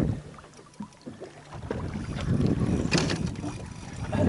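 Wind on the microphone and water moving around a small boat on open sea, a low rumble that drops away early on and builds again. A short sharp noise comes about three seconds in.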